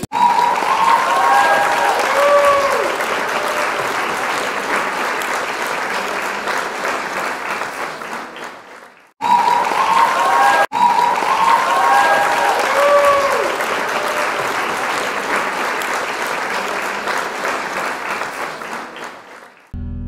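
Crowd applause with some cheering calls. It fades out after about nine seconds, then the same stretch plays again and fades near the end.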